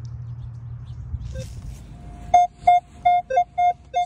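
Metal detector giving target tones as it is swept over buried metal: a quick run of short beeps about two seconds in, mostly one mid-high tone with a few lower-pitched beeps mixed in, over a low steady rumble.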